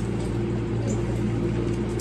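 Steady hum of an electric fan running in a small room, with a few faint sips through a drinking straw.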